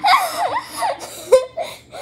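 Two teenage girls laughing hard together: a long, high-pitched laugh at first, then shorter bursts of laughter.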